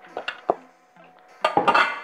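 Raw potato cubes dropped by hand into a glass bowl, three quick knocks in the first half second.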